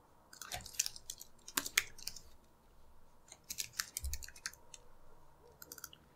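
Computer keyboard keys clicking in short runs of keystrokes with pauses between them.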